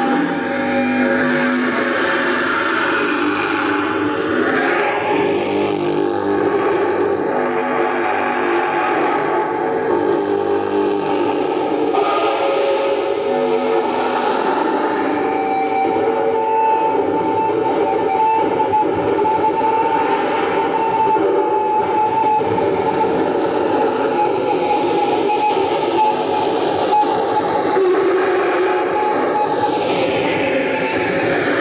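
Live noise music: a continuous wall of distorted noise at a steady loudness, with held whining tones and slow rising and falling sweeps running through it.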